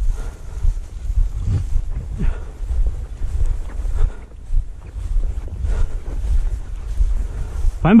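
Wind buffeting the microphone in a low, uneven rumble, with the rustle of someone walking through dry grass.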